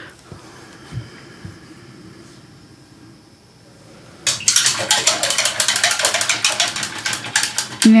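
A paintbrush worked against a paint palette, making a rapid run of scratchy clicking and scraping that starts suddenly about halfway through, after a few quieter seconds.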